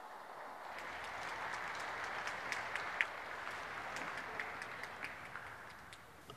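Audience applauding, the clapping building over the first second or so and dying away near the end.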